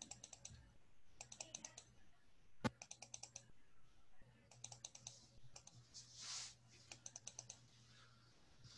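Faint typing on a computer keyboard in short runs of quick key clicks, with one sharper single click a little over two and a half seconds in, over a low steady hum.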